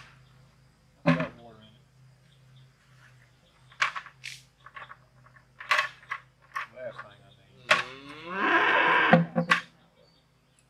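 Potatoes dropped by hand into a plastic bucket, a sharp knock each time, about eight times. About eight seconds in comes one drawn-out pitched call lasting about a second, falling in pitch at its start.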